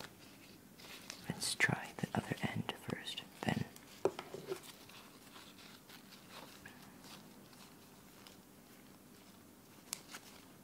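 Wooden blocks of a snake cube puzzle clicking and knocking together as they are twisted, with latex gloves rubbing on them. A run of sharp knocks in the first few seconds gives way to quieter handling.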